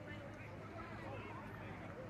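Indistinct voices, with a low steady engine hum from a junior sedan driving slowly around the dirt track.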